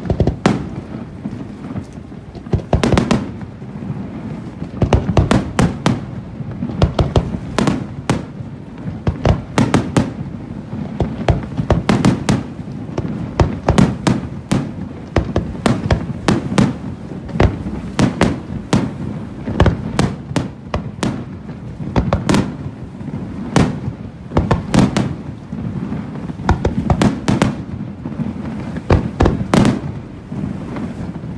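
Aerial firework shells bursting in a continuous barrage: sharp bangs following one another, often several a second.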